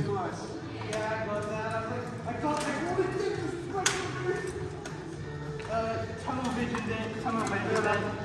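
Indistinct background talking in a large hall, with light clinks and steps from armoured fighters moving about and one sharp knock about four seconds in.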